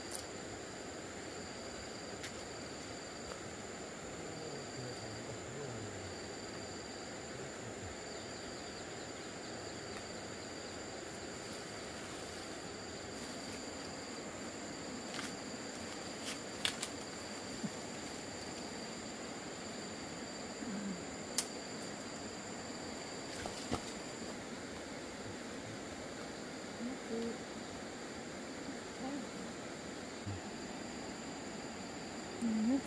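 Steady high-pitched insect chorus: one high trill runs on without a break, and a second pulses in bursts about once a second. A few sharp clicks and snaps break in around the middle.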